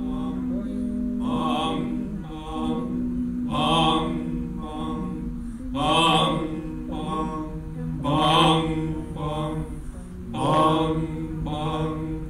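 Layered human voices chanting onomatopoeia: a low hummed drone held under short, repeated vocal syllables. The louder syllables come about every two seconds, with softer ones between, imitating animal calls.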